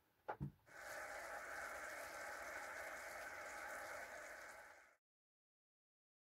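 Onions and mushrooms frying in a pan: a faint, steady sizzle that starts about a second in and cuts off suddenly near the end.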